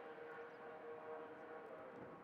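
Faint outdoor background ambience with a steady low hum.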